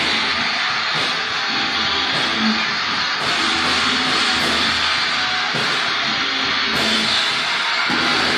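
Live heavy metal band playing, led by distorted electric guitar, with a dense, steady sound and no breaks.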